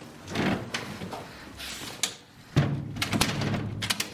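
Rattling and scraping at a glass-panelled door as it is taped over and locked, with a sharp click about two seconds in.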